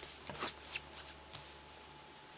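Comics in plastic bags being handled and shuffled, the plastic crinkling and rustling in a few short strokes during the first second and a half, then quieting.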